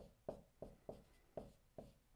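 Dry-erase marker writing on a whiteboard: a run of short, faint strokes, about three a second.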